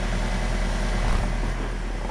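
A GMC Terrain's engine idling steadily with a low hum, running again in the cold after its weak battery was charged.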